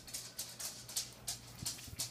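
Faint handling noises: plastic lipstick tubes picked up, knocked together and set down on the table, a series of light clicks and rustles.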